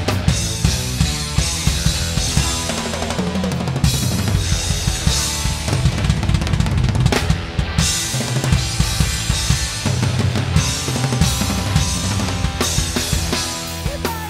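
A large rock drum kit played hard and busily: bass drum, snare and cymbal crashes in a dense, driving rock part, with pitched band instruments under it.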